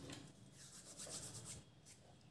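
Faint rubbing and light scraping of a hand moving over a paper sheet, a few soft strokes about a second in, with a short click near the end.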